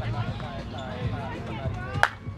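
Indistinct voices of people talking in the background, with a single sharp crack at the very end.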